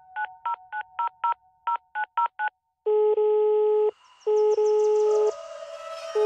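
Telephone keypad tones: about ten quick dialing beeps in the first two and a half seconds, followed by a ringing tone in pulses of about a second, as a call is placed. Music comes in under the ringing tone from about four seconds in.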